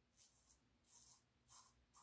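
Very faint scraping of a cartridge razor drawn over stubble on the back of a shaved scalp: three or four short strokes about half a second apart.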